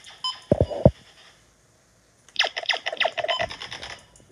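Handling noise from a phone being swung and rubbed as it moves: a pair of thumps about half a second in, then a rapid run of scratchy rubbing strokes near the end.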